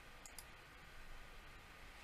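Near silence: faint steady hiss of room tone, with two brief, faint, high clicks close together near the start.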